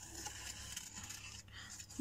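Scissors cutting a small circle out of light blue paper: faint, uneven snipping.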